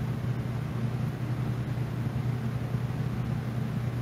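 Steady low hum with an even background hiss, unchanging throughout.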